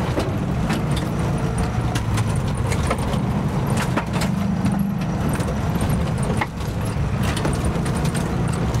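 Lada Cossack's engine running steadily as it drives over rough ground, with frequent short rattles and knocks from the body and loose parts as it bounces, heard from inside the cabin.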